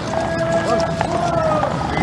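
Hooves of the horses pulling a carriage and of its mounted escort clip-clopping on a paved road, with long held band notes in the background.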